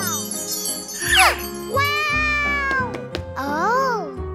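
Cartoon background music with a sparkling, tinkling jingle, over which a voice makes short wordless exclamations that swoop down, hold, then rise and fall.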